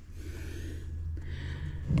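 A man breathing out and then in close to the microphone, two soft breaths, over a steady low hum.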